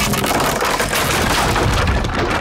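Cartoon sound effect of a wooden boat being crunched and broken apart: a continuous, loud wood crunching and splintering with a low rumble underneath.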